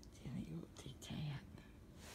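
Two short, soft, low voice sounds, about a second apart: a person murmuring or chuckling quietly.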